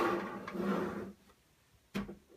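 Plastic back panel of a SodaStream Jet drinks maker being slid and pushed onto the machine, a scraping rub for about a second. Near the end comes a single sharp click as the side buttons pop back into place, latching the panel over the gas canister.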